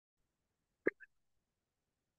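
Near silence broken by one brief vocal sound, a short clipped throat or mouth noise, just under a second in, with a fainter blip right after it.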